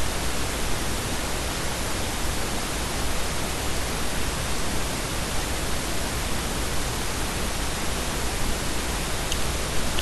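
Steady hiss of recording noise from the microphone, with a faint low hum underneath. Nothing else stands out.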